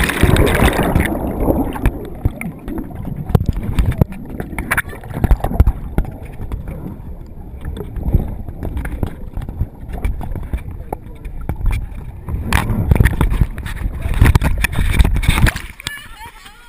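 Whitewater splashing over a raft-borne GoPro. About a second in the sound turns muffled and low, with many knocks and bumps against the camera, as it is swamped in the rapid. Louder surges of water come near the end.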